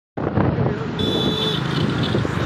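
Steady rumble of a moving road vehicle, engine and road noise heard from on board, starting abruptly just after the start. A thin steady high tone sounds for about half a second midway.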